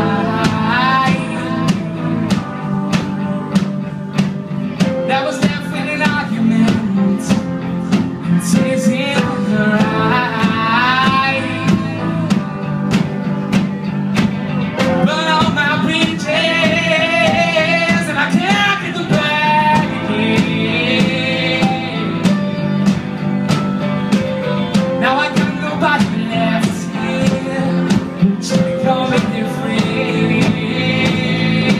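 A live rock band playing a song: a drum kit keeping a steady beat of cymbal and snare hits under electric guitars, bass and keyboard, with a wavering lead melody over them.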